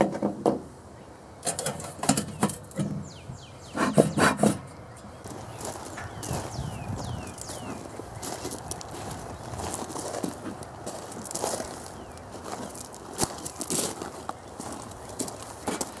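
Stainless-steel bee smoker being handled: several metal clanks and clinks in the first few seconds, then the bellows puffing smoke into the hive. Birds chirp in the background, a few falling calls in the first half.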